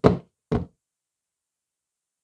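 Two knocks about half a second apart as a smartphone is handled and set against the desk beside the microphone.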